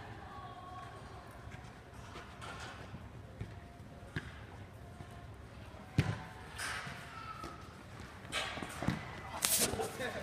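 Futsal ball kicked during play: a few sharp thuds, the loudest about six seconds in, among players' shouts and calls.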